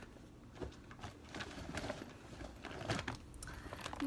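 Soft, irregular rustling and light knocks of shoes and clothing being handled, as one item is set aside and a corduroy backpack is picked up.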